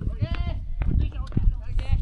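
Soccer players shouting to each other across the pitch: two high-pitched, drawn-out calls, one at the start and one near the end, with a few sharp knocks in between.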